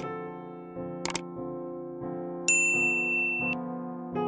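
Soft piano music with two quick clicks, at the start and about a second in, then one bright ding about two and a half seconds in that rings for about a second and stops suddenly: the click and notification-bell sound effects of a subscribe-button animation.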